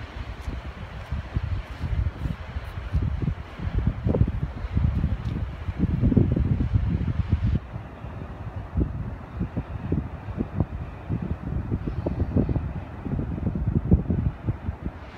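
Wind buffeting the microphone in irregular gusts, a low rushing that swells and drops.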